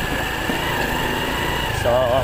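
Small motorbike engine running while riding along a street: a low steady rumble with a constant high whine over it.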